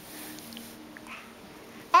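Quiet room with a faint steady hum; right at the end a high, sing-song voice breaks in with a greeting.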